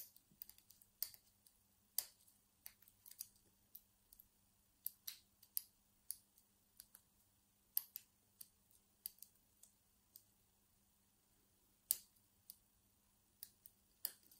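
Faint, irregular clicks and ticks of a homemade hacksaw-blade pick working the pins inside a brass Abus 65/50 padlock's five-pin cylinder during picking, with a louder click about twelve seconds in.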